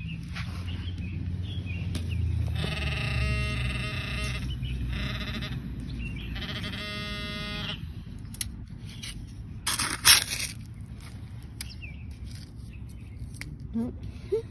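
Handheld metal-detecting pinpointer giving its buzzing alert tone in three bursts while probed in the dig hole over a target. About ten seconds in, a digging scoop knocks and scrapes through gravelly sand, the loudest sound.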